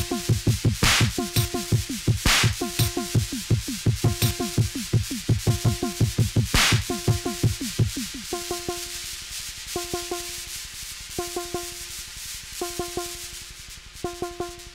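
Live electronic techno set: a fast kick-drum pattern under a repeating synth stab, with a few bursts of noise sweeping across the top. About eight seconds in the kick drops out, leaving the synth stab repeating roughly every second and a half over a hissy texture.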